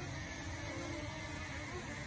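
Quadcopter drone's propellers humming faintly and steadily while it flies, over a low steady background rumble.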